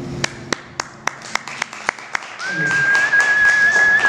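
Audience clapping at the end of a performance: evenly spaced single claps, about four a second, then fuller applause joins with one long, slightly wavering whistle over it.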